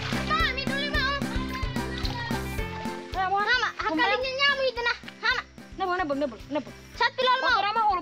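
Children's voices calling out to each other over background music with a steady, repeating bass line.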